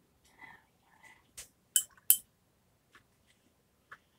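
A few sharp clinks, the two loudest about half a second apart near the middle, as a paintbrush is knocked against a hard container. A few faint, soft sounds come just before them.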